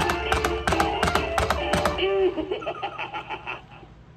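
Animated jumping vampire toy's small built-in speaker playing the close of its Halloween song, with a quick, regular ticking beat under the voice. About two seconds in the song gives way to a short vocal sound followed by a run of quick pulses that fade out.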